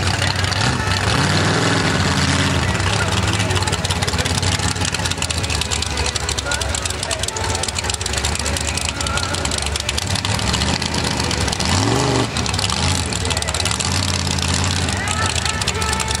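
Mud-racing truck engine running loud at idle, revved up a couple of times, about a second in and again near 12 seconds, over a noisy background.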